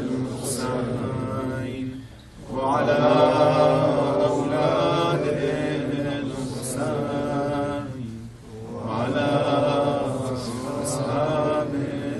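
A man's voice chanting an Arabic recitation in long, drawn-out melodic phrases, with short breath pauses about two seconds and eight and a half seconds in.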